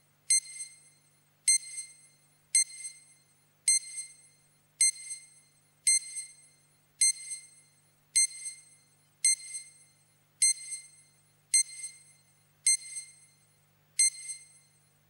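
Hospital patient monitor beeping with each heartbeat: a short, high, clear beep a little under once a second, each followed by a fainter echo, over a faint steady low hum.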